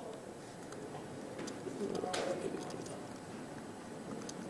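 Faint, sparse keystroke clicks on a laptop keyboard as a line of code is typed, over lecture-hall room noise, with a faint murmur of voices about two seconds in.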